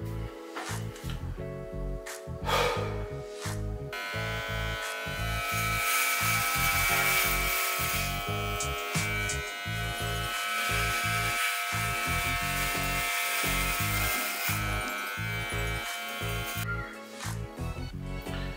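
Electric hair clippers buzzing while cutting hair, switched on about four seconds in and off shortly before the end, over background music with a steady beat.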